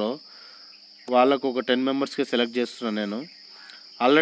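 A man talking for about two seconds in the middle, with short pauses either side, over a constant high-pitched hiss in the background.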